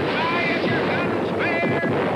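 A steady rushing noise of water and ambience, with high-pitched shouting voices twice over it. It is the soundtrack of a ride's pirate-ship battle scene.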